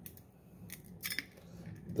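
A few faint clicks and light metallic rattles in the middle as a grenade-shaped hot sauce bottle with a metal ball-chain dog tag is picked up and handled.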